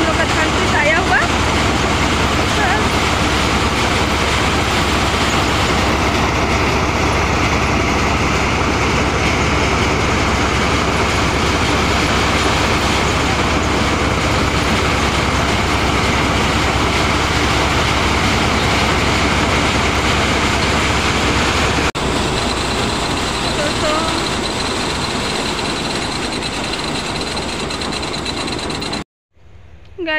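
Motorised paddy thresher running at full speed as bundles of harvested rice are fed into its drum: a loud, steady machine din with a low hum. About two-thirds of the way through it becomes somewhat quieter, and it cuts off suddenly just before the end.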